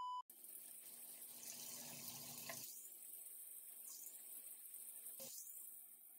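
A steady high test-tone beep cuts off a moment in. Then a bathroom sink tap runs faintly with a steady hiss.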